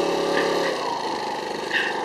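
An engine running steadily, its even hum fading about a second in over a continuous background rumble.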